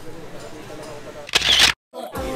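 One loud, brief camera shutter click about a second and a half in, as a phone selfie is taken.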